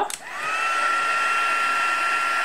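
Embossing heat tool switched on with a click, its fan motor spinning up over the first half second to a steady whirring hum with a high whine. It is blowing hot air to dry the wet ink sprays on a card.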